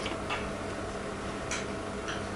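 A few soft clicks of chopsticks against a small tableware bowl during eating, over a faint steady room hum.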